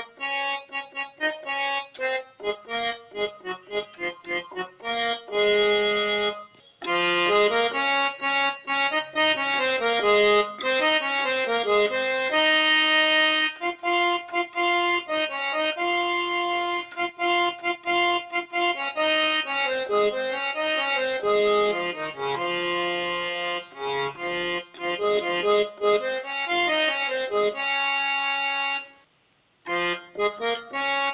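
Electronic keyboard playing a slow melody one finger at a time in a reedy harmonium-like voice. The held notes step from pitch to pitch, and the playing stops for about a second near the end before it resumes.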